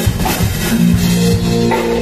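Live rock band playing: drum kit and electric guitars, with a held chord ringing out from a little under a second in.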